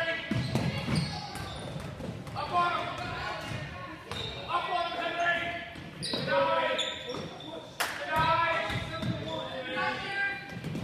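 A basketball being dribbled on a hardwood gym floor during play, with voices calling out across a large gym.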